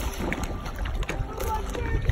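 Wind buffeting the recording microphone as a steady low rumble, with people's voices mixed in, including a short spoken or laughing sound near the end.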